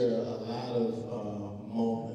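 A man's voice through a handheld microphone, drawn out in long, held phrases.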